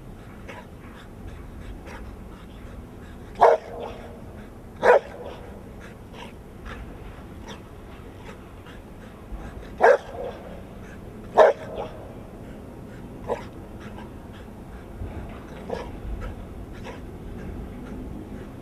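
A large dog barking in pairs: two loud barks about a second and a half apart, a pause of about five seconds, then two more, followed by a couple of fainter barks while it lunges on its leash.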